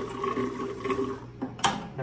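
Star San sanitizer running from a unitank's stainless butterfly valve into a glass flask, foaming as it fills, with a steady sound from the stream. A sharp click follows about one and a half seconds in.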